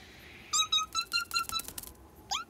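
A cartoon chick's rapid run of short, high peeps, stepping slightly up in pitch, with tiny clicking steps, starting about half a second in.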